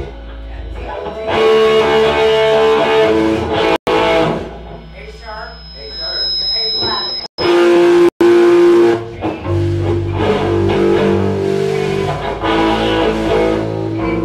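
Guitar playing held notes and chords in a small room. The sound cuts out completely for an instant three times.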